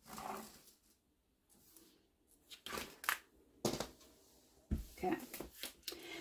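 Quiet handling noise of a quilted fabric panel and a clear acrylic ruler on a cutting mat: about four short scraping, rustling strokes as lines are marked and the panel is turned.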